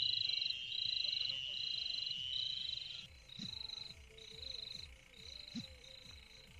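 Night chorus of short, buzzy, high trills repeating about every two-thirds of a second, over a steady high whine that stops about halfway through. A couple of soft low thumps come in the second half.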